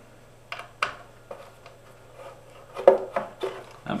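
Small clicks, taps and scrapes of a small wrench and loose screws being handled on a guitar's backplate, as a backplate screw is set aside and the wrench is fitted into the next screw to loosen it. The sharpest click comes about three seconds in.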